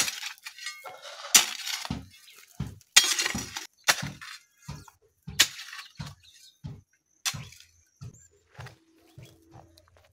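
Metal hoe blade chopping into soil as a planting hole is dug, a sharp strike every half second to second, some strikes dragging into a short gritty scrape.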